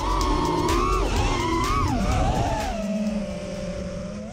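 Racing quadcopter's 2306 1750kv brushless motors with HQ 5048 props, whining and rising and falling in pitch as the throttle changes. About halfway through the pitch drops and holds steady while the sound fades.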